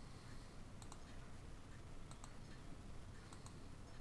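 A few faint clicks of a computer mouse button, spaced irregularly, as objects are shift-selected one at a time, over a low steady hiss.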